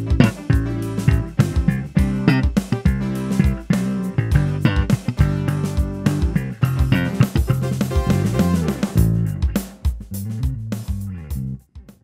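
Fender Mexico 75th Anniversary Jazz Bass played fingerstyle over a backing track, a busy line of plucked notes on its neck pickup. The playing stops just before the end.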